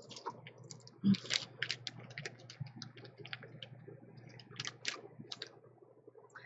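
Plastic nail polish swatch sticks clicking against each other and the metal swatch ring as they are pushed along it: a quick, irregular run of light clicks, the sharpest about a second in.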